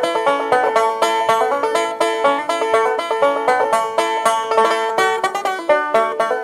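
Old-time string band instrumental led by a banjo picking a quick, even run of bright plucked notes.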